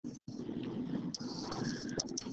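Steady, faint room background with a few light, brief taps and scratches of a stylus writing on a tablet screen. The sound drops out for an instant near the start.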